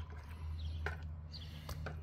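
A few faint, sharp taps and clicks of a fillet knife and fish being handled on a cutting board, over a low steady hum; the electric knife's motor is not running.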